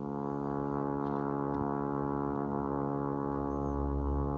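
A low, steady sustained note from horn and live electronics, rich in overtones, starting suddenly and holding its pitch while growing slightly louder.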